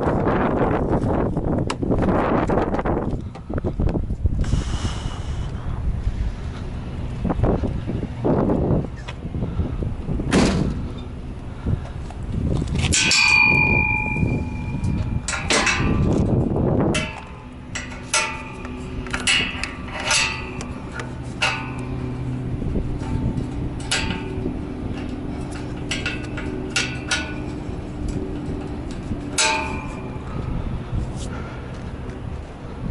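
Metal clanks and knocks from hands working latches and panels on a semi-truck's front end, with one clear ringing metal clang a little before the halfway point. Loud low rumbling noise fills the first half, and from just past halfway a steady low engine hum runs underneath the knocks.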